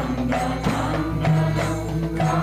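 Group devotional kirtan singing over a sustained drone, kept in time by a steady beat of small metal hand cymbals (kartals).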